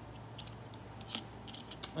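Light clicks and taps of plastic Lego minifigures being handled and set down on a Lego plate, several short sharp clicks with the strongest a little past a second in.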